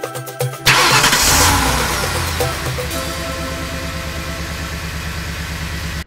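Music cut off about a second in by a car engine starting with a loud burst, then running steadily with a low, even rumble.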